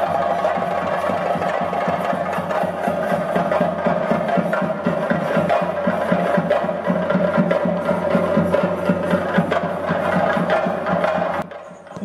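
Several chenda drums played together in fast, dense drumming, with a steady high tone running beneath the strokes. The drumming stops abruptly near the end.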